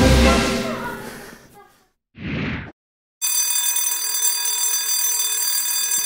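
Background music fading out, then a short burst of noise about two seconds in. From about three seconds in, an electric fire alarm bell rings steadily and without a break.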